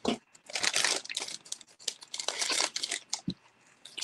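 Candy packaging crinkling and rustling as it is handled, in irregular bursts that stop about three seconds in.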